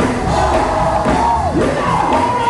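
Gospel choir singing with loud instrumental accompaniment, voices holding high notes, one of which slides downward about a second and a half in.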